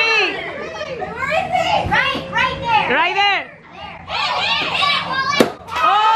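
A group of children shouting and cheering excitedly in high voices, with one sharp crack near the end.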